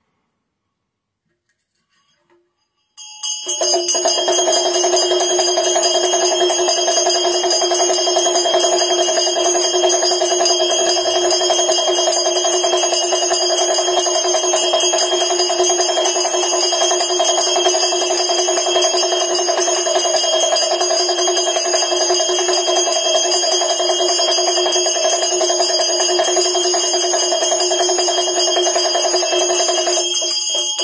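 A Tibetan damaru hand drum rattled rapidly together with a ringing hand bell, one continuous stream of fast drum strokes under a sustained bell ring. It starts about three seconds in and stays loud and even.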